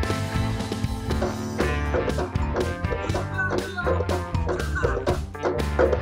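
A song playing out of an AmazonBasics portable Bluetooth speaker, streamed to it from a phone over Bluetooth: recorded music with a steady bass line and beat.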